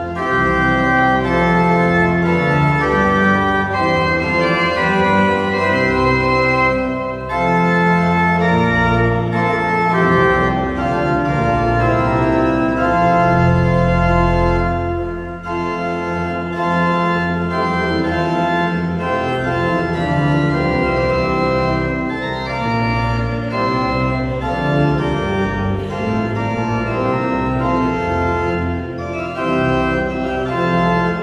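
Large pipe organ playing a hymn tune in full sustained chords over a bass line. The phrases break off briefly about 7 and 15 seconds in.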